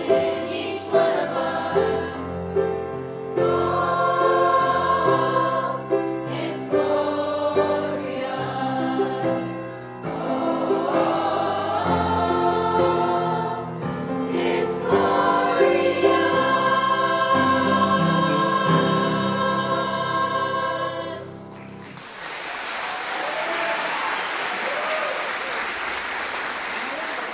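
Mixed youth choir singing in harmony with piano accompaniment, the song ending about 21 seconds in, followed by audience applause.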